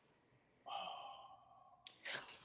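A person's breathy exhale, like a sigh, starting just over half a second in and fading away within about a second, followed by a faint single click near the end.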